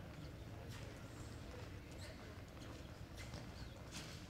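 Horse's hooves on soft arena dirt: scattered, uneven thuds and scuffs as a reining horse steps and pivots into a turn, over a steady low rumble.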